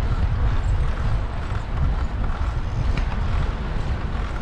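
Wind buffeting the microphone of a moving bicycle: a continuous, gusty low rumble with tyre and road noise underneath.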